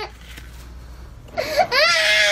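A baby starts crying about a second and a half in, a rising wail that then holds one high pitch, after a quiet first second.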